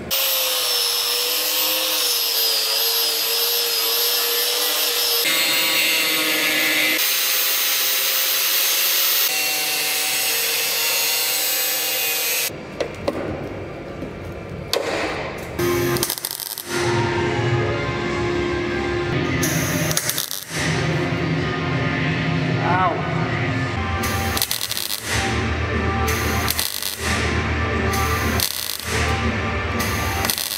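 A power tool cutting out rusted steel from a car's chassis rail, with a steady high whine, in a few short spliced runs. About twelve seconds in, the sound changes to a MIG welder welding in new 2 mm steel plate: crackling runs that start and stop every second or two.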